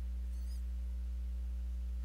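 A steady low electrical hum, with a faint, brief high-pitched warble about half a second in.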